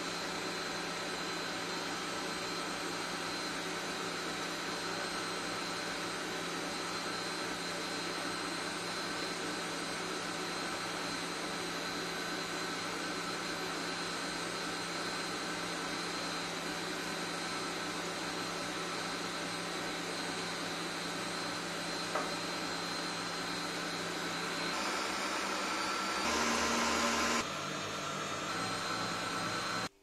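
Kenwood stand mixer's motor running steadily as its balloon whisk beats eggs and sugar into a pale, foamy génoise batter; the sound changes and gets louder near the end.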